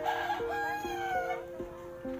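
A rooster crowing once, for about a second and a half, its pitch sagging slightly toward the end, over background music of plucked-string notes.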